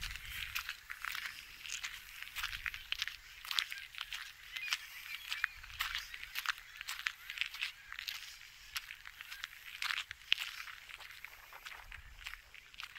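Footsteps crunching on a loose gravel path at a walking pace: a steady run of irregular crunches as each step lands on the small stones.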